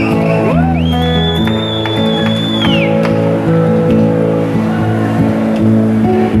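Live band music with held chords underneath, and over it a high, pure whistle-like tone that slides up, holds steady for about two seconds and falls away about three seconds in.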